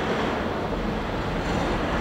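Steady background din: a low rumble with hiss and no clear voices.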